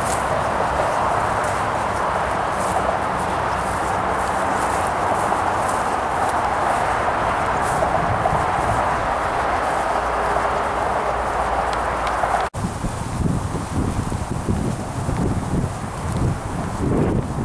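A walker's footsteps on an earth footpath, about one step a second, over a steady hiss. About three-quarters of the way through there is an abrupt cut, and the audio becomes low, gusty wind buffeting the microphone.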